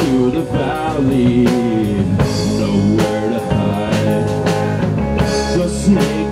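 Live rock band playing: a gold-top Les Paul-style electric guitar over a drum kit, with steady drum and cymbal hits and some notes bending in pitch.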